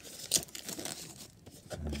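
Clear plastic film wrapping crinkling and tearing as it is pulled off a cardboard product box, with a sharper crackle about a third of a second in.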